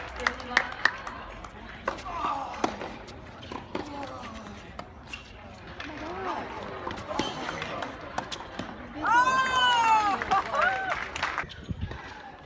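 Tennis balls bouncing and being hit on an outdoor hard court: sharp, irregular knocks, over the murmur of spectators' voices. About nine seconds in, a loud, high, drawn-out call rises above everything else for about two seconds.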